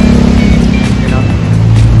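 A motor vehicle engine running close by: a steady low hum that settles to a lower pitch about one and a half seconds in.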